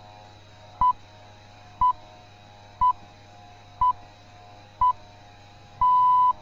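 The BBC Greenwich Time Signal, the 'pips': five short high beeps one second apart, then a longer sixth beep near the end that marks the exact start of the hour. A low steady hum sits under them.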